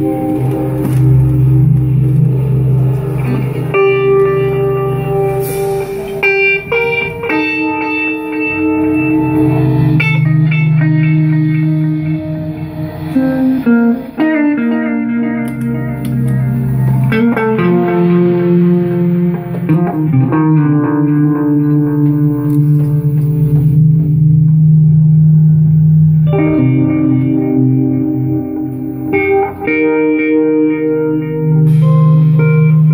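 Live psychedelic rock band playing an instrumental passage: electric guitar through an amp holding long notes that change every few seconds over a sustained low note, with drums and cymbals.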